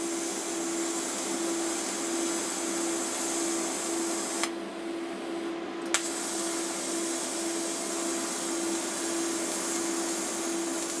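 TIG welding arc on stainless steel sheet: a steady hiss with a constant hum beneath it. About four and a half seconds in the arc cuts out with a click, and a second and a half later it strikes again with another sharp click.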